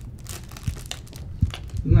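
Thin plastic wrapper of a snack cake crinkling in the hand, a run of short, scattered crackles.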